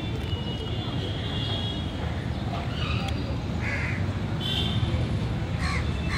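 Steady low street rumble with birds calling in short, curling notes a few times in the second half.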